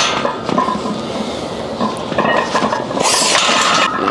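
Loaded Olympic barbell and its plates clinking and rattling in a power rack during a bench press rep, over steady gym background noise. A hissing burst comes about three seconds in and lasts nearly a second, then the bar settles back on the rack.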